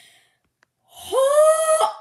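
A boy's loud, high-pitched vocal squeal with a lot of breath in it, lasting about a second: the pitch rises at the start, then holds until it cuts off.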